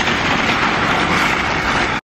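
Wind buffeting the microphone: a loud, rough rushing noise that cuts off abruptly at the end.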